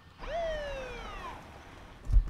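Movie trailer soundtrack: a single pitched call that rises briefly and then slides slowly downward for about a second, fading out over a low rumble.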